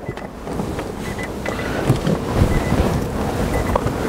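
Rustling and wind noise on the microphone, a rough steady rush with low rumbles, while a person climbs into a car's driver's seat with the camera.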